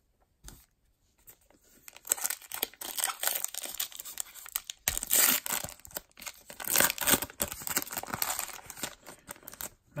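Foil wrapper of a trading-card pack crinkling and tearing in the hands: a dense run of sharp crackles starting about two seconds in.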